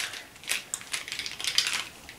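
Plastic makeup sticks clicking against each other as a bundle of them is handled in the hands; a run of light, irregular clicks.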